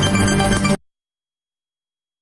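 News programme ident music, a bright electronic sting with many sustained tones, that cuts off abruptly under a second in, leaving dead silence.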